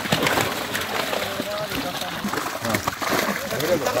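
Many large fish thrashing and splashing in the shallow water of a seine net drawn tight in a pond, a busy, irregular patter of splashes, with men's voices calling over it.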